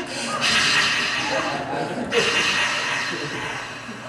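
A man blowing a long, breathy roar into a close-held microphone, imitating a cheering crowd, in three long breaths with short breaks about a third of a second and two seconds in, fading near the end.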